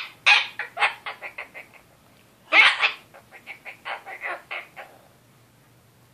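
Goffin's cockatoo babbling a speech-like 'lecture': two runs of rapid, short chattering syllables, each opening with a loud call and trailing off quieter, falling silent near the end.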